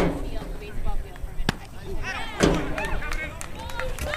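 A sharp crack of a baseball bat hitting a pitched ball about a second and a half in, followed about a second later by spectators shouting. A single knock sounds at the very start.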